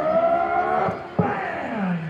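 A spectator's high-pitched whoop, held and rising slightly, then a second yell about a second in that slides steeply down in pitch, answering a call to make noise, with crowd noise behind.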